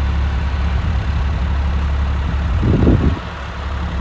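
John Deere 5405 tractor's diesel engine running with a steady low drone while pulling a rotavator through soil, with a short louder burst about three seconds in.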